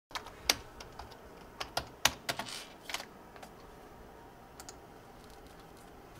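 Typing on a computer keyboard: irregular keystrokes, loudest and busiest in the first three seconds, then a few sparse ones, with a short rustle partway through.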